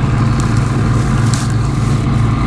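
Bizon combine harvester's diesel engine running steadily under heavy load while threshing a dense rye crop, a constant low hum.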